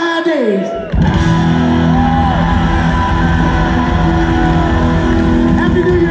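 Live rock band playing loud through a hall PA, heard from the audience on a phone: electric guitars, bass and drums. A falling glide in pitch trails off, then the full band comes in hard about a second in and holds steady, ringing chords.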